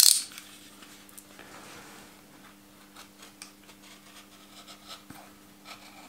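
A knife trimming the edge of a stitched three-layer leather sheath: one short, loud slicing cut right at the start, then faint scraping cuts and small ticks.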